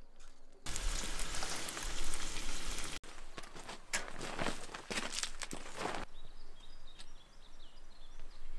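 Rustling and crunching as a ground sheet is handled on river gravel, in irregular crackles after an abrupt cut from a denser rustling noise. A few faint bird chirps come in near the end.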